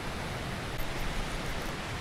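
Water rushing steadily over the lip of a low concrete spillway into the creek below.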